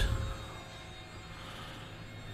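Power tailgate of a Volvo XC60 lowering under its electric motor after the close button is pressed: a faint, steady whine over a low hum.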